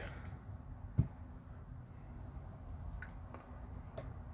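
Folding knife handled and lifted off a bamboo mat: one sharp knock about a second in, then a few faint ticks, over a low steady room hum.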